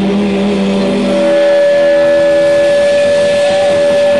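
Live rock band's electric guitars letting a loud chord ring out as a sustained drone. About a second in, the held low chord gives way to a single steady higher tone that holds.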